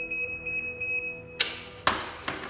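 A steady high electronic beep tone, then a brief loud hiss-like burst about one and a half seconds in, followed by a sharp click just before the end.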